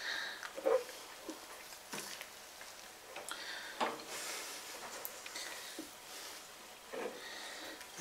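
Quiet stirring of a wet grain mash with a stainless steel spoon, with a few brief louder stirs and knocks, at the dough-in stage where the grains are stirred to break up clumps.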